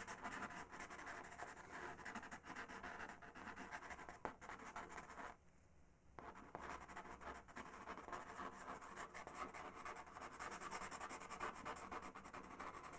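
Faint scratching of a Faber-Castell pastel pencil on PastelMat paper in quick, short strokes, stopping briefly about five and a half seconds in.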